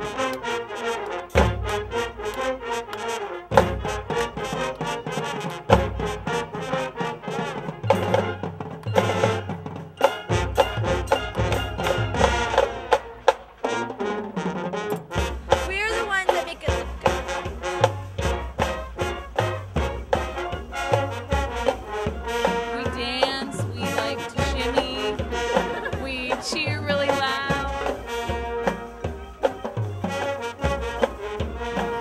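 Brass band music, trumpets and trombones over drums, with a steady beat.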